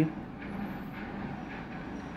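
Steady low background noise, a faint even rumble and hiss with no distinct events.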